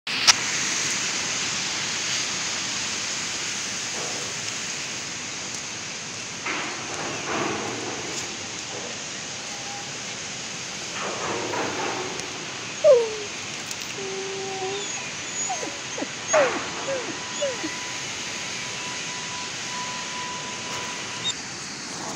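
Samoyed dogs whimpering: a string of short, high whines, most of them falling in pitch, in the second half. Under it runs a steady hiss, with a couple of spells of rustling in dry leaves.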